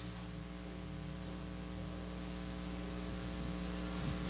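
Steady electrical mains hum, a low drone with a stack of even overtones, over a faint hiss.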